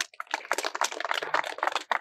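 Audience applause: a quick, irregular patter of many hand claps, starting a moment in.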